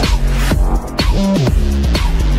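Electronic dance music with heavy bass and synth notes that slide in pitch. The high end briefly drops out about half a second in.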